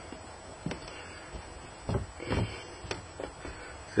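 Hands pressing and patting loose flake soil (fermented beech sawdust with rotten leaves) down into a plastic rearing box: a few short, scattered soft thuds and rustles.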